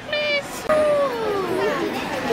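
A child's high voice calls out in a long falling tone, over a background of crowd chatter.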